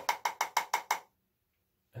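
A kabuki powder brush tapped rapidly and repeatedly against the lid of a loose-powder container to knock off excess powder, about seven sharp taps a second; the tapping stops about a second in.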